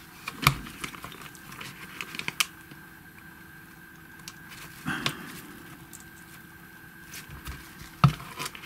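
Light clicks and rustles of the plastic parts of a toy fairground ride model being handled in gloved hands, with a sharp click about half a second in and another about two and a half seconds in. A faint steady tone sits underneath.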